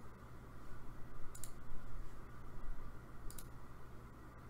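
Two computer mouse clicks, each a quick double click of press and release, about two seconds apart, over a low steady hum.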